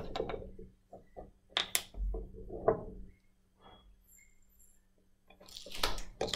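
Quiet clicks and knocks of glass bottles and a screw cap being handled, then a short rattle near the end as anti-bumping granules are tipped from their small glass bottle.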